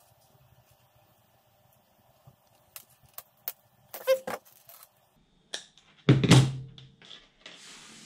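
Monofilament line and a hook being handled while a knot is tied by hand: faint rustles and a few sharp clicks. About six seconds in there is one loud, short sound, and near the end a soft hiss.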